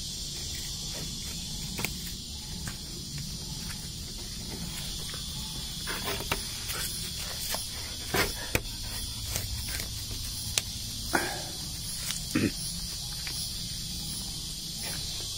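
A steady high insect drone, with scattered short scratches and taps as a dog paws and sniffs at the soil and leaf litter while hunting a mole.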